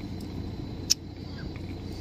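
Car engine running with a steady low rumble, heard from inside the vehicle, with one sharp click about a second in.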